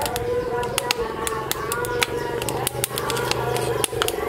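Wood fire crackling with frequent sharp pops, over a continuous voice-like sound underneath.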